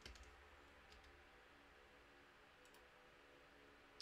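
Near silence, with a few faint computer clicks near the start and again later, as a name is typed and selected on screen.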